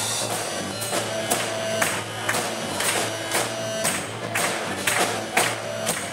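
Live rock band playing, with a drum kit keeping a steady beat about twice a second under electric bass and electric guitar.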